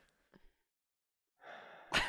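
Near silence, then about a second and a half in a person's breathy intake of breath that leads into a laugh.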